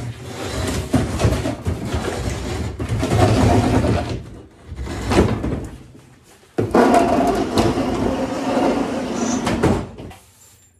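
Heavy wooden workbench cabinet shoved across a concrete floor, scraping and rumbling in long pushes with short pauses, the last push ending just before the end.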